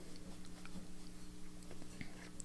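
Quiet room tone with a steady low hum and a few faint light ticks as a fountain pen is handled and moved away from the page.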